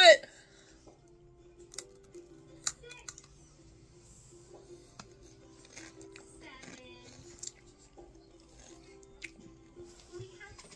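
Someone chewing a crunchy rolled corn tortilla chip (Blue Heat Takis): a few sharp crunches scattered through, the loudest about three seconds in, over a faint steady hum.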